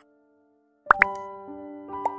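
Animated subscribe-button sound effects: after a short silence, a quick rising pop and a second pop about a second in as the button is clicked, followed by held chime-like musical notes.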